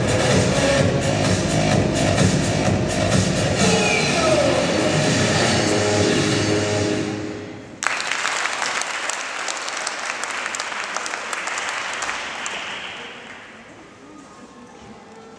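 Music with a steady beat fades out about seven seconds in. Just before eight seconds, audience applause breaks out suddenly, then dies away near the end.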